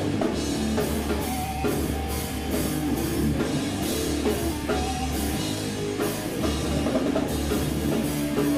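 Live rock band playing loud and steady, with electric guitar over a drum kit keeping a regular beat; the bass end drops out briefly about five and a half seconds in.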